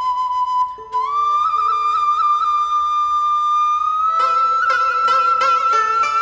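Instrumental folk-style music: a flute plays long held notes with slight vibrato, stepping up in pitch after a brief break about a second in. Short accompanying notes join about four seconds in.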